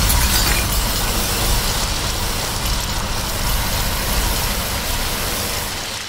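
A continuous wash of rapid drumming and crashing cymbals on a junk-percussion kit of metal drums, wheels and cymbals. It starts loud and gradually dies away near the end.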